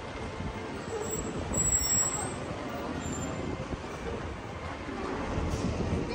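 Steady low rumble of a motor vehicle running nearby, with general street noise.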